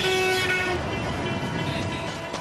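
A horn-like tone held for under a second at the start, over a steady noisy background.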